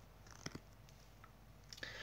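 Near silence: room tone with a couple of faint short clicks about half a second in.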